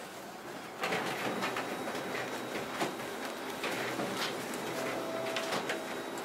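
Paper rustling and crackling as sheets of a document are handled and leafed through, starting about a second in as a run of short scratchy strokes.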